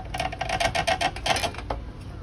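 A rapid run of about a dozen sharp clicks, roughly eight a second, lasting about a second and a half, as a hand works a power cord's plug in the outlet of a power inverter.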